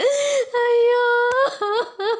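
A high-pitched voice crying: a short cry, then one long drawn-out wail, then short broken sobs near the end.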